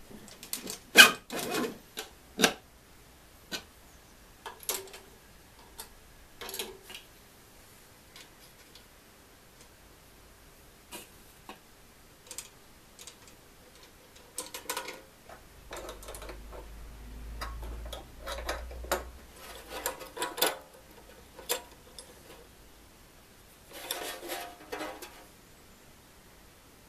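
Small hand tools and metal banjo hardware clicking and tapping at irregular intervals as the banjo is assembled: a screwdriver on the truss rod cover screws, then a small wrench on the tension hook nuts around the rim. The sharpest click comes about a second in, and a low hum runs for a few seconds midway.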